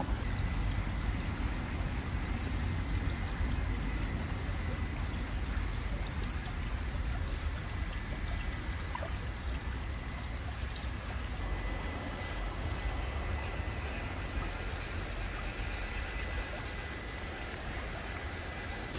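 Steady rushing outdoor noise with a strong low rumble and a faint, steady high whine that stops near the end.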